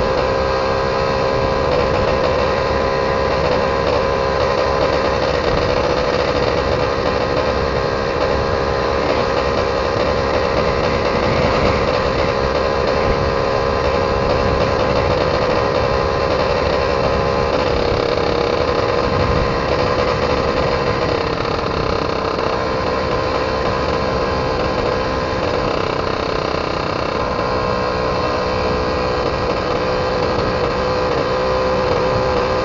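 Yamaha F1ZR's two-stroke single-cylinder engine running steadily as the moped cruises along the road, its note wavering only slightly, with wind rumble on the microphone underneath.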